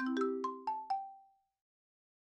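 A short musical jingle: a low held chord under about six quick bell-like notes stepping down in pitch, fading out about halfway through.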